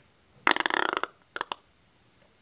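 A person making a burp-like noise, about half a second long, followed by two quick clicks.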